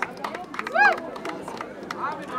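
A small crowd clapping unevenly, with one high-pitched voice call that rises and falls a little under a second in.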